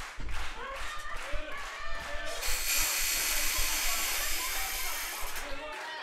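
Faint voices from the wrestling match broadcast beneath, with a steady high hiss from about two and a half to five seconds in.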